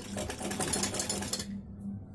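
Sewing machine stitching through cotton fabric: a fast, even run of needle clicks that stops about one and a half seconds in.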